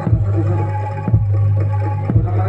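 Live Javanese jaranan campursari music played through a PA, with a deep drum or gong stroke about once a second over a sustained low tone and pitched instruments above.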